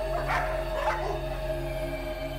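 A sustained music drone of held low tones, with a dog barking twice in the first second.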